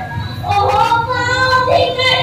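A high voice singing a slow melodic line of a bhaona stage song, its notes held and gliding.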